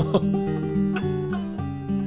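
Taylor AD27 acoustic guitar played fingerstyle, single notes and chord tones ringing in a steady pattern, its body sound picked up by a condenser microphone.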